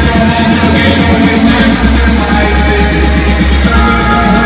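Electronic dance music from a DJ set, played loud over a club sound system and heavy in the bass. A deep, sustained bass note comes in about one and a half seconds in and holds until near the end.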